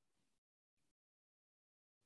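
Near silence: the audio drops out almost completely in a pause between the speaker's words.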